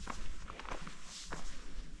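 A hiker's footsteps on a dirt mountain trail strewn with leaf litter: a handful of short, uneven steps.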